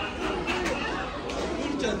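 Indistinct chatter of people talking in a busy shop.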